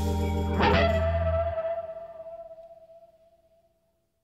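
The closing moments of a music track: a held low chord stops about one and a half seconds in, while a final electric guitar chord, struck about half a second in with echo effects, rings on and fades away to silence near the end.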